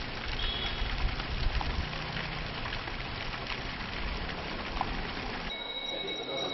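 Steady outdoor background noise from the camera microphone, an even hiss with low rumble and a few faint clicks. Near the end it cuts to quieter indoor room tone with a steady high-pitched whine.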